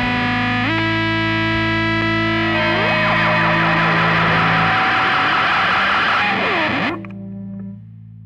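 Distorted electric guitars through effects let a final chord ring out as the song ends, with notes bending in pitch. The chord cuts off suddenly about seven seconds in, leaving a low steady hum.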